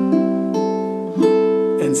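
Baritone ukulele with PHD strings, tuned low G-C-E-A, played as picked chords. The notes enter one after another and ring on, and a new chord is struck a little over a second in.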